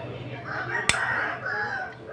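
A rooster crowing, one call lasting about a second and a half, with a single sharp click about a second in.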